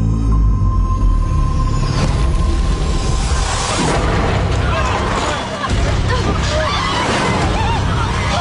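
Film sound of an airliner cabin in a sudden in-flight emergency. A deep rumble with a steady high tone runs through the first three seconds, then passengers scream from about four seconds in, over tense music.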